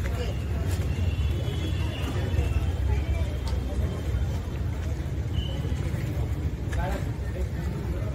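Indistinct voices of people talking in the background over a steady low rumble, with a few short clicks.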